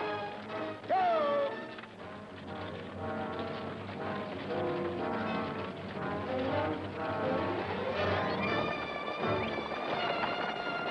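Dramatic film score music, with horses' hooves clip-clopping beneath it as horse teams pull a stagecoach and wagon. A sharp rising-and-falling tone sounds about a second in.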